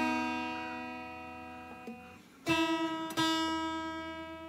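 Solid-body electric guitar's B string, fretted at the fifth fret, and open high E string sounding together as a unison tuning check. The notes ring and fade, then are picked again about two and a half seconds in, while the high E is tuned to match the fretted B.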